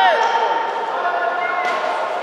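Voices shouting in a sports hall, with one sharp thump about a second and a half in.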